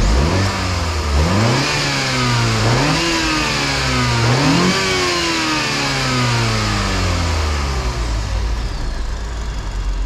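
BMW 120i's 2.0-litre turbocharged inline-four, heard from the open engine bay, revved about four times: the pitch climbs quickly and drops back with each blip. After the last blip it sinks slowly back to idle.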